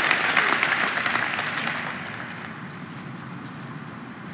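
Audience applause dying away: a dense patter of clapping that fades out over about two seconds, leaving low, steady crowd noise.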